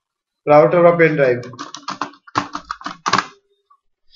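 A short burst of a man's voice about half a second in, then a run of about ten quick keystrokes on a computer keyboard over the next two seconds, as a search term is typed.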